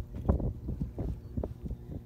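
Wind rumbling on a handheld phone microphone, with irregular low thumps of footsteps on dry, grassy ground as a horse is led.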